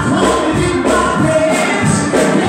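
Gospel song: a woman singing into a microphone over music with choir voices and a steady beat.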